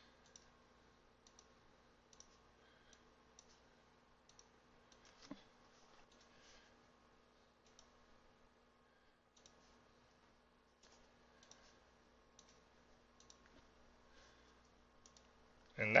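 Faint computer mouse clicks, spaced about a second apart, as points are placed one by one in digitizing software, over a low steady electrical hum. A slightly louder knock comes about five seconds in.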